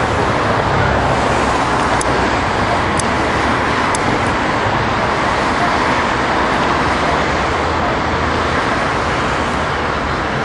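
Steady rushing noise with an unsteady low rumble, with faint ticks about a second apart in the first few seconds.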